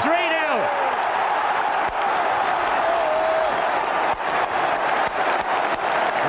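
Large football stadium crowd cheering and applauding a home goal, a steady dense noise of many voices and clapping.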